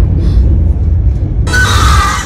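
Horror trailer score and sound design: a loud, steady low rumble under the music. A bright hissing sweep comes in sharply about one and a half seconds in.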